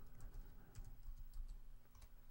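Computer keyboard typing: a run of faint, light key clicks as a word is typed.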